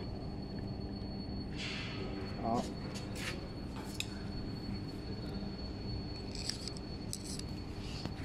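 Steady low background hum with a faint, thin high-pitched whine, broken by a few light clicks and brief rustling handling noises.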